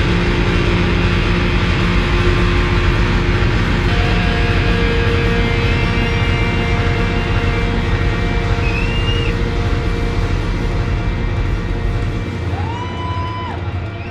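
Live electric guitar through effects pedals, playing a loud, sustained, distorted drone with held steady tones and a few short sliding notes, with no drumbeat.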